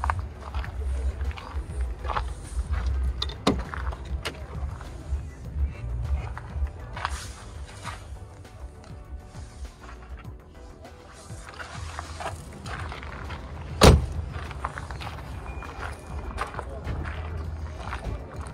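Open-air car-market background: a low rumble on the microphone with faint music, distant voices and scattered small clicks. About fourteen seconds in comes one sharp, loud thump.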